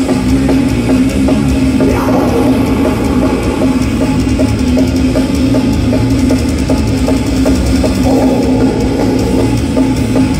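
Death metal band playing live through a festival PA: heavy distorted guitars hold a low droning note over a steady, even drum beat, heard loud from within the crowd.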